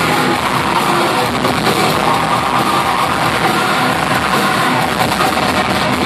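Live heavy metal band playing loud: distorted electric guitars, bass and drums in one dense, steady wall of sound, recorded from the crowd on an overloaded microphone.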